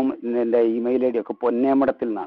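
Only speech: a man talking continuously, with brief pauses between phrases.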